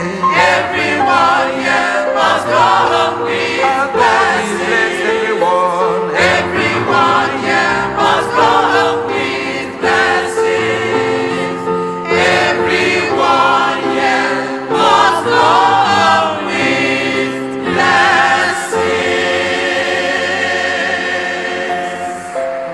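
Mixed choir of men's and women's voices singing a gospel song into microphones.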